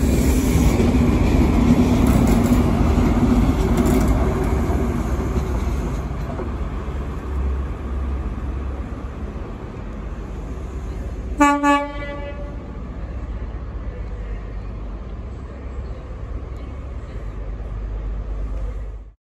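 A CrossCountry HST's carriages rumble past close by, easing off after about six seconds. About eleven and a half seconds in, an HST diesel power car sounds its horn in two short toots, with the train's engine rumbling on underneath.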